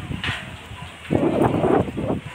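Loud, irregular rumbling and crackling noise on the phone's microphone, setting in about a second in, after a short hiss just after the start.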